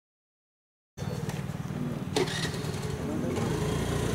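A motor vehicle's engine running steadily, with people's voices in the background and a brief knock about two seconds in. The sound starts abruptly about a second in, after silence.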